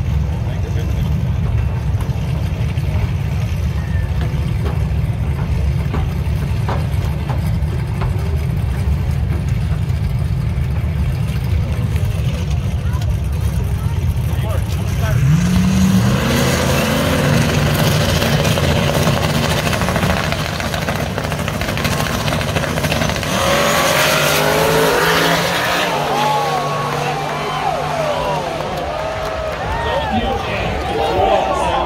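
Drag-race cars' engines rumbling at the start line, then revving hard about halfway through, the pitch climbing as they pull away. Spectators shout and yell in the later part.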